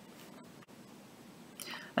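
Faint, steady room hiss in a pause between spoken sentences, with a soft in-breath near the end just before speech resumes.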